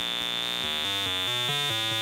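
Modular synthesizer line played through the high-pass section of a Doepfer A-106-1 Xtreme Filter: a quick run of stepped notes, about four a second, thin and tinny, with a steady high-pitched whine above them. The high-pass level is being turned toward its negative setting, which sounds very similar to the positive one.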